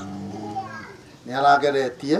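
Speech only: a man talking into a handheld microphone, with a short phrase in the second half after a brief lull.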